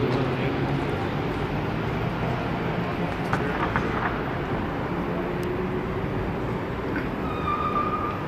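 Outdoor city ambience: a steady wash of traffic noise with distant voices, and a brief high steady tone near the end.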